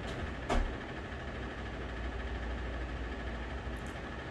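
Steady low hum of room air conditioning, with a single soft thump about half a second in.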